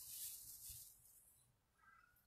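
Near silence: a pause in speech with a faint hiss that dies away about a second in.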